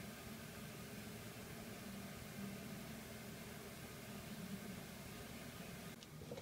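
Faint steady hiss of room tone, with no distinct sound.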